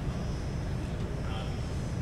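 Faint, distant, indistinct speech, too far from the microphone to make out, over a steady low rumble.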